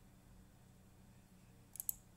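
A quick run of three sharp computer clicks, like key or button presses, near the end, over a faint steady hum.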